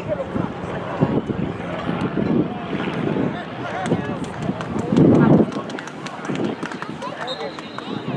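Spectators and players calling out and talking, with a loud shout about five seconds in.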